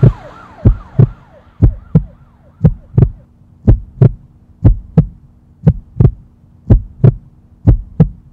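Heartbeat sound effect: a steady double thump, lub-dub, about once a second. A siren's wail fades out in the first second or so, and a low steady hum joins about halfway through.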